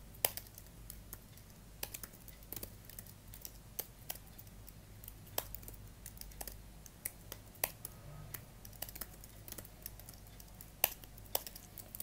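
Computer keyboard typing: irregular, quick keystrokes with short pauses, over a faint low hum.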